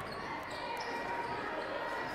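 A basketball being dribbled on a hardwood gym floor, over the steady murmur of voices in a large gym.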